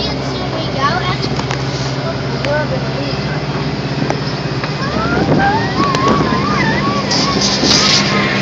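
Steady drone of a tractor engine towing an old helicopter shell, with occasional knocks from the ride. From about five seconds in, a high wavering voice rises and falls over it.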